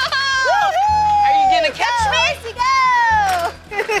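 Excited whooping cries from carousel riders: two long held calls that slide down in pitch, with shorter yells between, over background music.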